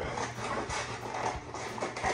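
Scissors cutting through stiff industrial sandpaper: a run of gritty, rasping snips and crunches at an uneven pace.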